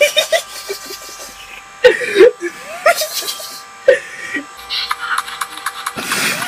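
Steady electronic buzz made of several held tones, typical of a Windows PC's sound freezing into a repeating loop when it crashes to a blue screen of death (driver IRQL not less or equal, caused by the myfault.sys crash tool). Short bursts of a person's voice and laughter break in a few times.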